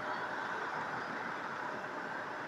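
Steady hum of an idling car engine, an even noise with no distinct knocks or changes.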